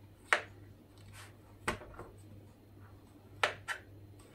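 Kitchen knife slicing fresh porcini mushroom and striking a plastic cutting board: about five sharp knocks, the loudest just after the start and two close together near the end.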